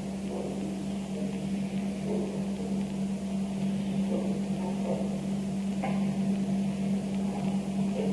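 A steady low electrical hum with background hiss.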